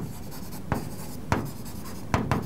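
A marker writing on a board: faint scratching, with two short, sharper strokes of the tip in the middle.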